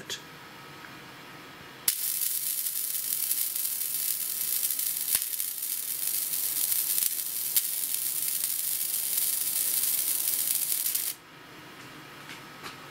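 20-watt MOPA fiber laser marking polycarbonate: a loud, high, even hiss as the pulsed beam burns into the plastic, with a few sharp clicks. It starts suddenly about two seconds in and cuts off about nine seconds later.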